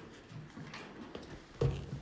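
Handling noise from a phone being picked up and carried: a few light knocks, then a louder thump about one and a half seconds in, over faint room noise.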